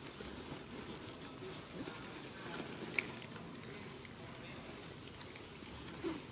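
Outdoor ambience with a steady high-pitched insect drone throughout, and a single sharp click about halfway through.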